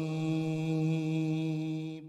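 A man's voice holding one long chanted note at a steady pitch, the closing drawn-out note of a Quran recitation, fading away at the end.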